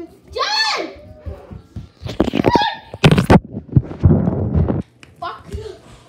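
A child's high voice calling out in short cries, with a sudden loud noise about three seconds in.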